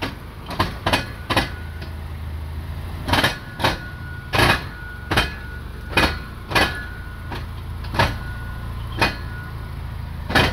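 A Mazda Miata's four-cylinder engine idling steadily, with a string of sharp knocks every half second to a second over it.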